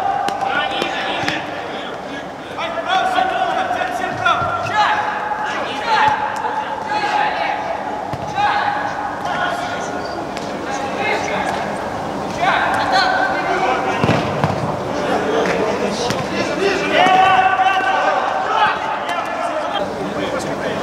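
Shouts and long drawn-out calls from people at a futsal game, some rising in pitch, with the thuds of the ball being kicked and bouncing on the hard court.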